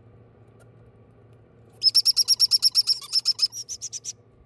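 Baby parrot chick chirping: a fast, even run of short, high chirps, about eight a second, starting a little under two seconds in and lasting about two seconds.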